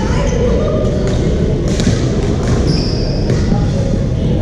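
Badminton rally in a reverberant gym hall: sharp racket-on-shuttlecock hits, roughly a second apart, and a brief high squeak of a shoe on the court floor, over a steady din of voices and play from neighbouring courts.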